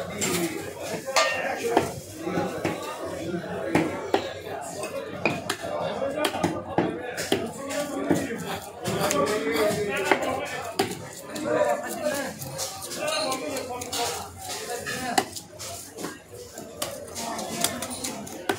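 A large knife chopping through a goonch catfish's head on a wooden block: sharp knocks of the blade through bone and into wood, at uneven intervals of a second or two. Market voices chatter underneath throughout.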